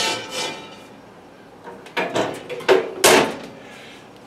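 The ring of a cast iron skillet set on an oven rack fades out, then a few knocks and a loud clank just after three seconds in as the enamelled cookstove's oven door is shut.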